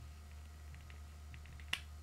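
Small plastic side shield being worked onto a sunglasses arm: a few faint ticks of handling, then one sharp snap near the end as it clicks on. A low steady hum runs underneath.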